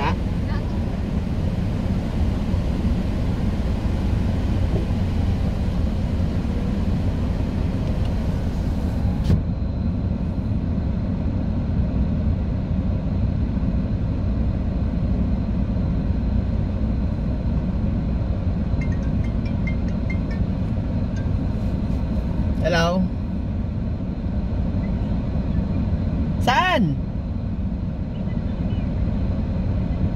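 Steady low rumble of a stationary car's idling engine heard from inside the cabin; a faint hiss above it drops away about a third of the way in. Two brief voice-like calls sound near the end.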